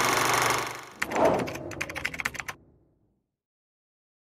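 Logo-reveal sound effects: a bright, sustained whoosh for about the first second, then a short swell and a rapid run of about a dozen sharp clicks that stops about two and a half seconds in.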